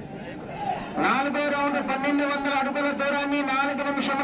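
A man's voice calling out in one long, drawn-out tone held on a nearly level pitch, starting about a second in, with crowd noise underneath.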